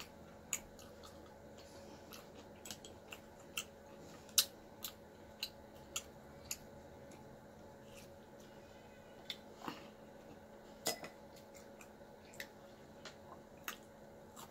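Close-miked chewing and mouth sounds: irregular sharp wet clicks and smacks, a few a second at times, as food is eaten.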